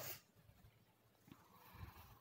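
Near silence with faint rustling of hands rubbing coarse gram flour moistened with ghee and milk in a plastic bowl; a brief scratchy rustle right at the start and another soft one near the end.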